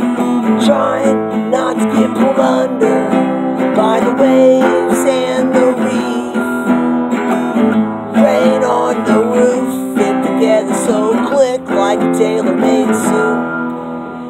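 Acoustic guitar strummed continuously in an uptempo folk-punk rhythm, with a man's singing voice over it at times.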